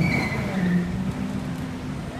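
A motor vehicle's engine humming steadily in the street, with a brief high squeal at the start.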